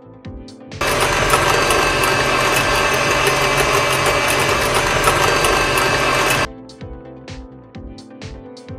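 Electric hand mixer running, its beaters whisking eggs in a glass bowl. It switches on about a second in, runs steadily, and cuts off suddenly about six and a half seconds in.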